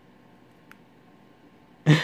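Quiet room tone with one faint tap about two-thirds of a second in, the S Pen stylus tip touching the phone's glass screen. Near the end comes a short, loud burst of a man's voice.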